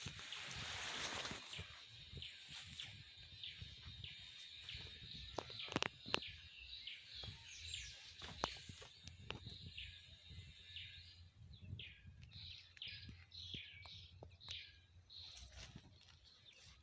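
Faint birds chirping and calling, with a rush of noise in the first two seconds and a couple of sharp clicks about six seconds in.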